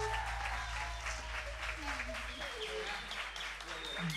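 A small audience applauding with scattered clapping and some voices, just after the song ends. Under it, the band's last low note dies away over the first two seconds.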